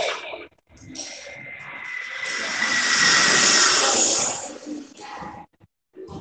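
A rush of noise that swells up after the music stops, peaks midway and fades away over about four seconds, with a faint steady tone running under it.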